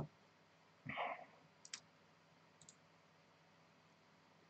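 Near silence broken by a few faint clicks, one at the start and two more about two and three seconds in, with a brief soft murmur about a second in.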